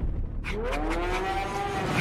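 A moaning, pitched call from the movie trailer's sound design sweeps upward about half a second in, then holds and sags slightly, over a low rumble.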